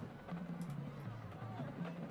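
Faint band music in a football stadium, low held notes stepping from one pitch to another, over a light murmur of background noise.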